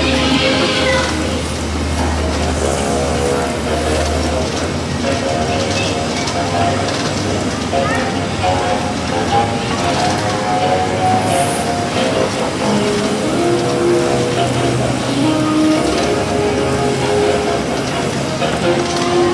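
Ride soundtrack music: a slow melody of long held notes, over a low steady hum that is strongest in the first few seconds.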